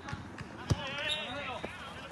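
Soccer ball being kicked on artificial turf: a few dull thuds, the sharpest a little under a second in, with players shouting in the distance.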